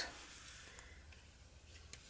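Near silence with faint ticks of metal knitting needles as a stitch is worked, one a little clearer near the end.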